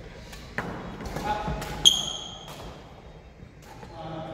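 Badminton rackets striking the shuttlecock in a large, echoing sports hall, with a light hit about half a second in and a sharp, high-pitched ringing ping of a racket hit a little under two seconds in, the loudest sound.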